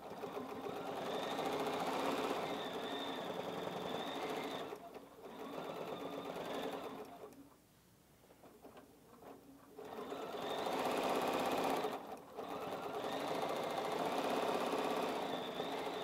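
Bernina 790 Plus sewing machine stitching at free-motion quilting speed through a quilt, with the Bernina Stitch Regulator (BSR) foot setting the stitch rate to the movement of the fabric. The stitching stops and starts several times, with a silence of about three seconds in the middle.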